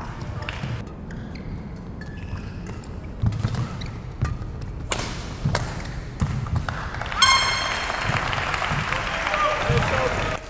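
Badminton rally in an indoor hall: sharp racket strikes on the shuttlecock and thudding footwork on the court. About seven seconds in comes a short high squeal, then shouting and cheering as the point is won.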